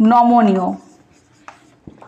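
A woman's voice drawing out a short word for under a second, then a pause with only faint small ticks and scratches.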